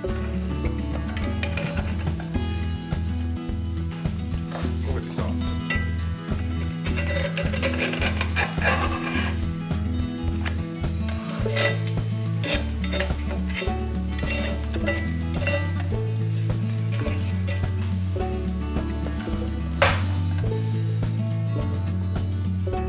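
Pancake batter sizzling in a cast-iron skillet on a gas-canister stove, with a metal spatula scraping and clicking against the pan as the pancake is worked loose and flipped. A sharp clink about twenty seconds in as the metal spatula is set down on a metal plate. Background music with a steady bass line runs underneath.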